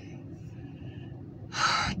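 A man's sharp, audible intake of breath, about half a second long and near the end, drawn in just before he starts speaking again, after a quiet pause.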